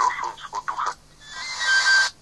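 Radio broadcast jingle or sound effect: a few brief fragments of voice, then a short hissing burst that swells in loudness and carries a thin high tone near its end.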